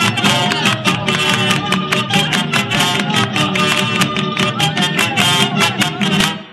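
Instrumental passage of a vintage bulerías recording: flamenco guitar strumming in a fast, driving rhythm.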